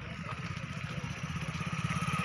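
A motorcycle engine running, getting steadily louder as it draws closer.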